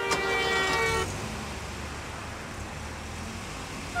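A car horn honks once, a steady pitched tone lasting about a second, followed by a low, steady rumble of car engine and street traffic.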